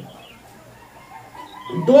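Domestic chickens calling faintly in the background during a quiet pause, with a man's voice starting again near the end.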